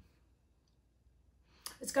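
Near silence with one faint click at the start, then a woman's voice begins speaking near the end.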